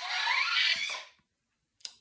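Motorised Iron Man replica helmet opening its faceplate on a voice command: the helmet's hissing, whirring robotic opening sound plays as the servos lift the mask. The sound stops a little after a second in, and a short click follows near the end.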